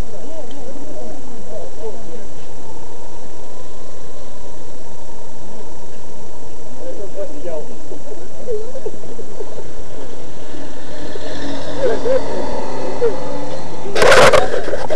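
Several people talking over each other in an indistinct hubbub, with a vehicle engine running steadily underneath.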